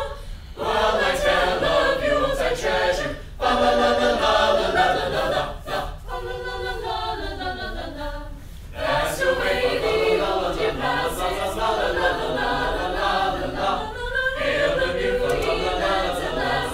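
Mixed choir of carolers singing a cappella in harmony, the phrases separated by several brief pauses.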